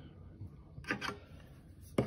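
Faint handling noises over quiet room tone: a brief rustle about a second in and a sharp click near the end.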